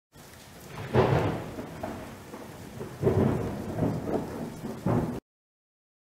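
A rumbling, thunder-like noise over a steady hiss, swelling about a second in, again around three seconds and near five seconds, then cut off abruptly: an opening sound effect.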